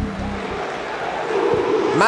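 Football stadium crowd noise from a television broadcast: a steady wash of many fans' voices, after background music cuts off at the very start.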